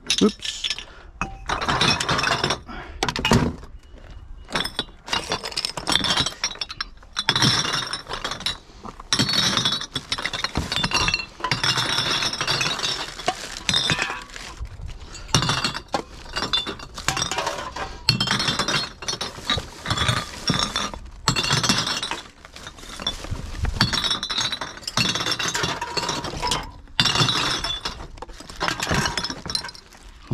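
Empty glass bottles and aluminium cans tossed one after another onto a heap of bottles and cans, clinking and clattering over and over, with rubbish in the bin being rummaged through between throws.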